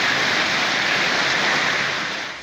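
Heavy downpour of a rain and hail storm, a steady hiss that fades near the end.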